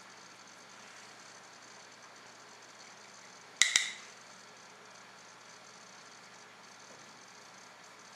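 Faint steady room hiss, broken about three and a half seconds in by one short, sharp clack of small makeup items being handled, as the brush is reloaded from the powder.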